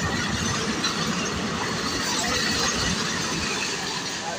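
Indian Railways passenger coaches passing at speed: a steady rush of wheel and rail noise, easing off near the end as the last coach goes by.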